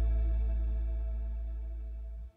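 Closing music: a single held guitar chord ringing out and slowly fading.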